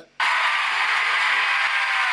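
Large audience applauding, a dense steady clapping that cuts in suddenly just after the start.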